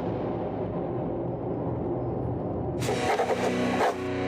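Sound-effect sting for a logo animation: a steady low rumble, then near the end a loud, rapidly fluttering burst of about a second that cuts off sharply.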